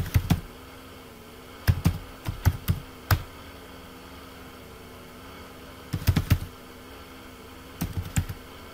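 Computer keyboard typing in short bursts of keystrokes: a few at the start, a run of about half a dozen between two and three seconds in, and another cluster about six seconds in. A faint steady hum sits underneath.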